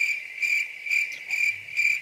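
Cricket chirping, a high steady chirp pulsing two or three times a second that cuts in and cuts off abruptly: an edited-in crickets sound effect, the comic cue for an awkward silence.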